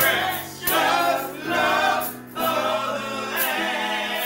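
Gospel praise-and-worship singing: several voices, men and women, sing together in long held phrases, four of them with short breaks between.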